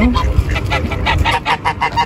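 A flock of waterbirds calling: many short, pitched calls in quick succession, about seven or eight a second.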